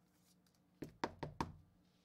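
Four quick sharp plastic clicks and taps about a second in, from a card being slid into a rigid clear plastic toploader holder and handled.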